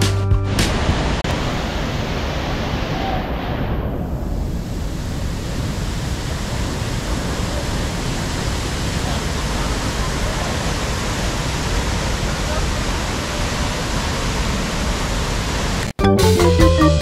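Steady rush of Tegenungan Waterfall, a large waterfall plunging into a pool, after background music fades out just after the start. Music comes back in right at the end.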